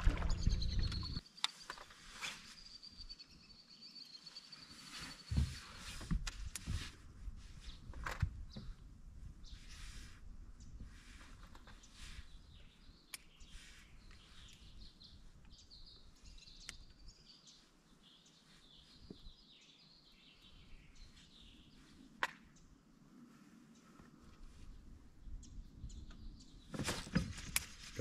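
Quiet open-air ambience with birds chirping, including a long, wavering high call near the start and more calls in the middle. A few sharp clicks stand out now and then.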